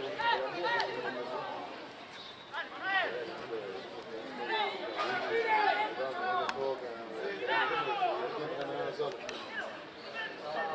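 Voices of players and coaches calling and shouting to each other across a football pitch during play, several at once.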